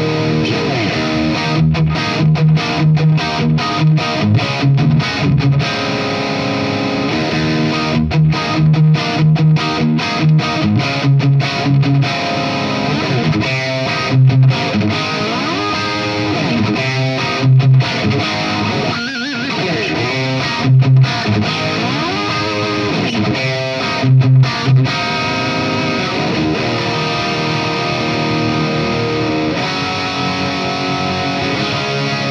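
Washburn N4 electric guitar with a Floyd Rose bridge played through a tube amp's distorted channel: tight, rhythmic low-string chugs broken by abrupt stops, then bent, gliding notes between a few heavy accented hits in the second half.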